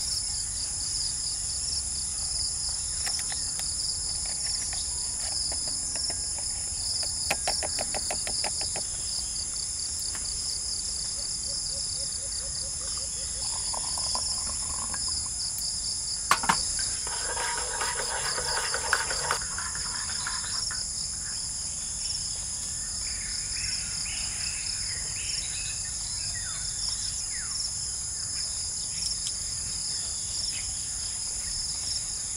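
A steady, high-pitched chorus of insects, with a few light clicks and clinks of camp cookware being handled and one sharp click about sixteen seconds in.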